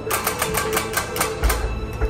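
Spinning prize wheel's flapper clicking against the pegs on its rim, the clicks quick at first and spacing out as the wheel slows.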